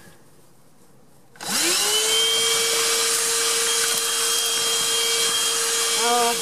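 HoLIFE cordless handheld vacuum cleaner switched on about a second and a half in, its motor whining up to speed within half a second and then running steadily.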